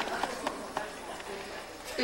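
Quiet, indistinct murmur of an audience's voices with a few light knocks scattered through it.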